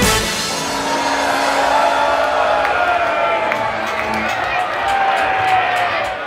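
Live band music stops right at the start, giving way to a crowd cheering and whooping, with long drawn-out shouts.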